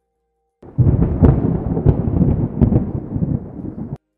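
Cinematic thunder-like rumble sound effect for a title-card transition, starting abruptly about half a second in, with a few sharp crackles in it, and cutting off suddenly at the end.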